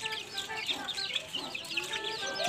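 A group of young chickens (chicks) peeping continuously as they eat: many short, high chirps overlapping several times a second.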